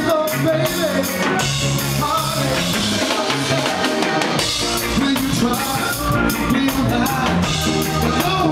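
Live reggae band playing: bass guitar, electric guitar and drum kit, with a male lead vocal sung into a microphone.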